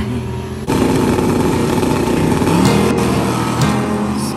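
Drag cars at wide-open throttle down the strip, led by the nitrous-fed big-block 1966 Chevelle wagon. The engine noise starts suddenly about a second in, and its pitch climbs as the cars pull away. A song plays over it.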